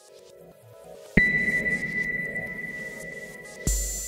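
Electronic soundtrack music. A low hum swells, then about a second in a sharp hit sets off a high ringing ping that fades slowly. Near the end comes a heavy bass hit.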